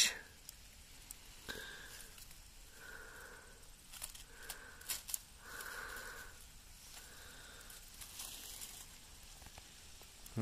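A person breathing close to the microphone, faint, one breath about every second and a half, with a few small clicks and rustles from plant stems being handled.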